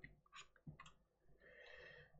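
Near silence: room tone with a few faint, short clicks in the first second.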